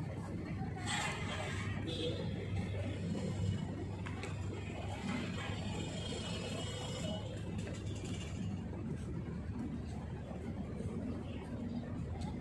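Outdoor background: a steady low hum with faint, indistinct voices and small scattered clicks.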